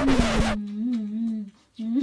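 A low, closed-mouth hum that wavers up and down in pitch, broken by a short gap past the middle. It follows a loud hissing rush that cuts off about half a second in.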